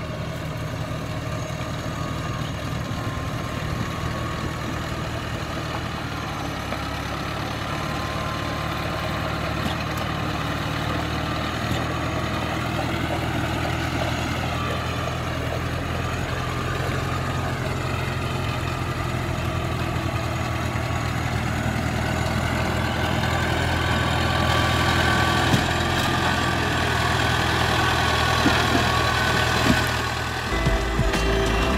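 Engine of a small tracked crawler carrier loaded with sacks of rice, running steadily as it drives through mud, growing louder as it comes closer.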